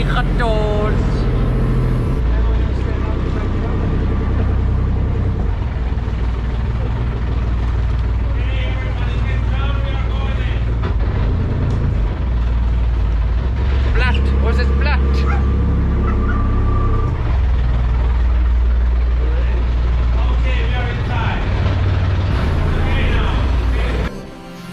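Small open tour boat's motor running steadily as it heads into a sea cave, with people's voices speaking and exclaiming several times over it.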